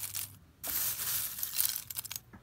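Dry biochar wood chips rustling and clinking as fingers stir through them, in two stretches with a short break about half a second in. A glassy sound like this is said to show that the char is done.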